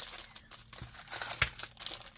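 Plastic cellophane packaging crinkling as cardboard-backed packs of craft flowers and buttons are handled and slid across a table, with one sharper knock about one and a half seconds in.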